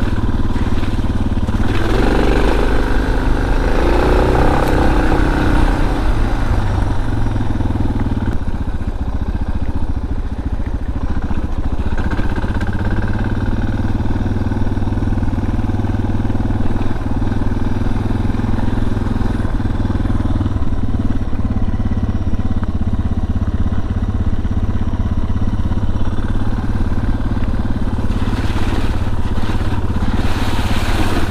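Suzuki DR650 dual-sport motorcycle's single-cylinder four-stroke engine running under way at a steady pace, a little louder for a few seconds near the start.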